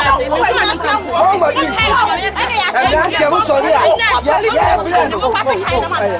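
Speech: voices talking without a break, with no other sound standing out.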